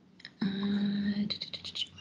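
A woman's drawn-out, steady hesitant "mmm", followed by a quick run of about six computer mouse clicks as she searches her screen.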